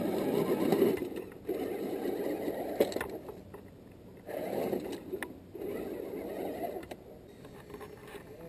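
Electric motor and geared drivetrain of a radio-controlled scale crawler truck whirring in several bursts of throttle as it climbs, falling away between bursts, with a few sharp clicks.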